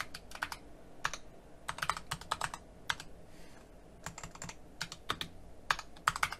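Computer keyboard being typed on: short runs of key clicks with brief pauses between them, as a command is entered.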